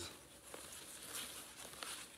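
Faint rustling of plastic wrap being peeled off a new wheel, with a few light ticks.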